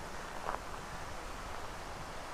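Faint, steady outdoor background hiss by a rural roadside, with a brief faint sound about half a second in.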